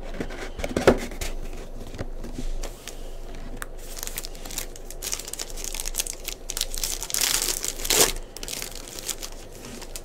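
Foil wrapper of a Panini Prizm football card pack crinkling in the hands and being torn open. The crinkling is densest and loudest from about four to eight seconds in, and there is a sharp knock about a second in.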